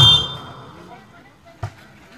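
A commentator's voice cuts off and trails away in echo. About a second and a half in, a single sharp smack of a volleyball being struck.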